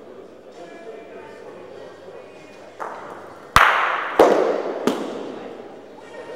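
Bocce balls knocking: three sharp clacks about two-thirds of a second apart in the second half, each ringing on with a long echo, over a low murmur of voices.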